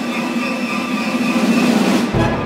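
Full symphony orchestra holding a dense, noisy, steady sound mass in a contemporary piece: a held low drone with a thin high tone above it, unbroken, with an almost machine-like grind.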